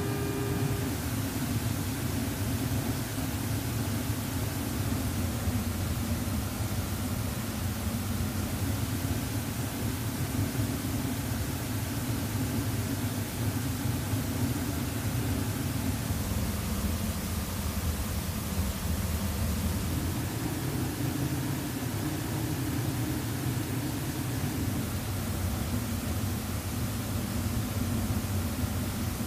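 Steady cabin drone of an E-3 Sentry in flight: engine and airflow noise, heaviest at the low end, with a faint hiss above.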